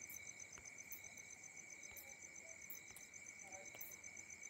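Near silence: room tone with a faint, high-pitched chirping pulse repeating several times a second, over a faint steady whine.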